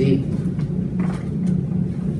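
Steady low hum with a rumble beneath it, the background noise of the recording; the tail of a spoken word ends right at the start.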